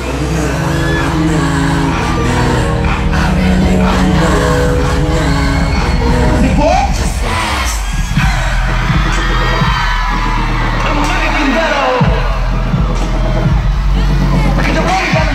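Loud pop music over a stadium sound system, with a heavy bass beat and sung vocals, and the crowd cheering and whooping along. About seven seconds in the music changes from held chords to a bass-driven beat.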